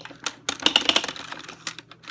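Rapid plastic clicking of a 1973 Kenner cassette movie projector's hand-cranked film-advance mechanism. The clicks thin out to a few scattered ones in the second half as the film cassette sticks and stops advancing.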